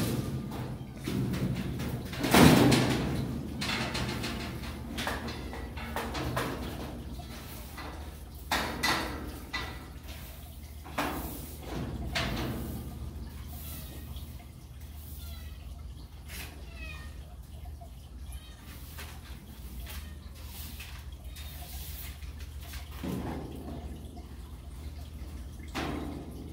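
Litter and dry cat food being swept out of a stainless steel cat cage with a hand brush into a plastic dustpan: scraping and brushing with scattered knocks, and one loud clank about two and a half seconds in as a part of the cage is lifted.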